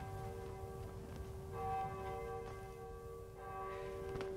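Town-hall bell tolling slowly, struck twice about two seconds apart, each strike ringing on into the next, as a call for the townspeople to assemble.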